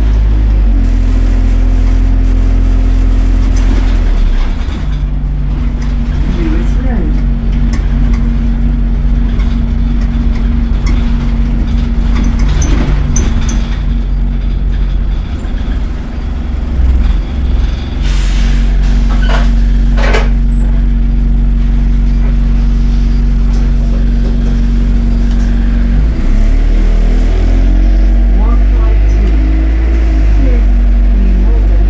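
A London single-deck bus's diesel engine heard from inside the passenger saloon, running with a steady drone that steps up and down in pitch a few times as the bus pulls away and slows. A couple of short hisses come about two-thirds of the way through.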